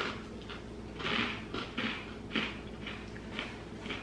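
Close-up chewing of dry sweetened corn-puff cereal with marshmallows, a run of irregular soft crunches, two or three a second.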